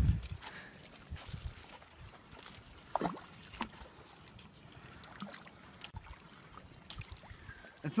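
Quiet water sloshing and small splashes from a hooked queenfish being played in the shallows at the bank, with a few short knocks, the clearest about three seconds in and near six seconds.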